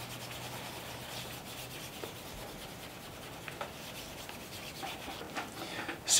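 Cotton chamois over a fingertip rubbing Saphir Mirror Gloss wax polish into the toe of a leather shoe: a soft, steady rubbing. This is a fourth coat of hard wax going on to build up a mirror shine.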